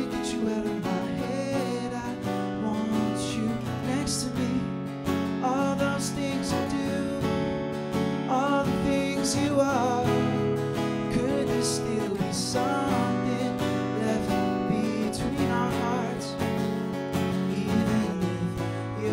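Strummed acoustic guitar with a man singing over it, a slow solo singer-songwriter song.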